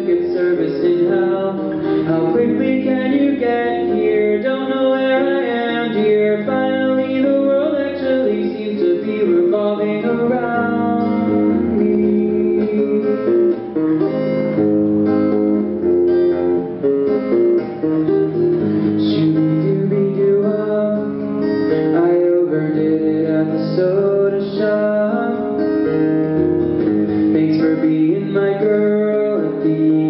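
Acoustic guitar played live, strummed and picked steadily through a song.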